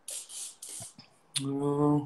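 A man's mouth noises: three short breathy hisses, then a click and a short held hum.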